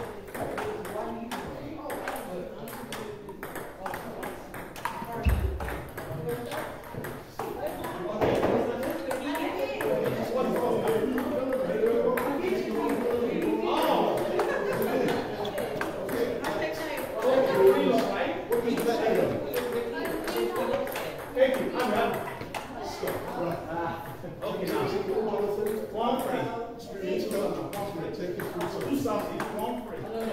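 Table tennis balls clicking off bats and tables, with overlapping rallies at several tables giving a continuous, irregular patter of hits. Voices chatter underneath.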